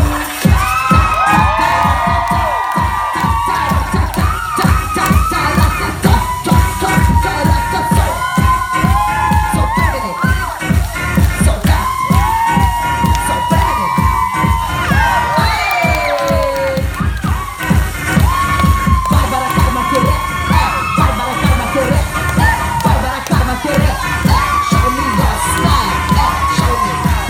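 Loud dance music with a steady thumping beat, with an audience cheering, whooping and shouting over it throughout.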